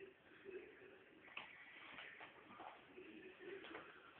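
Near silence: faint room tone with a few soft scuffs and clicks.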